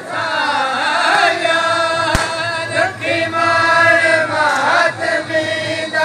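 Devotional chanting by a voice holding long notes that slide in pitch between them. A sharp click about two seconds in.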